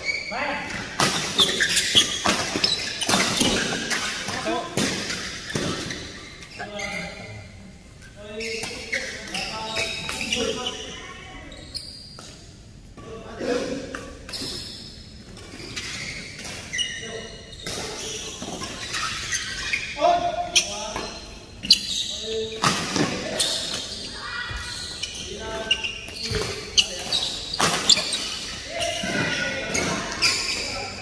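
Badminton doubles rally: sharp racket strikes on the shuttlecock with shoes squeaking and feet landing on the court, echoing in a large hall. The strikes come thick in the opening seconds, thin out in the middle and come thick again in the last third.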